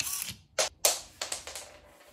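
A 3D-printed kibble dispenser's micro servos whir briefly as they release a single piece of dry kibble. The kibble then hits a hard floor and bounces off it in several sharp ticks, the loudest just under a second in.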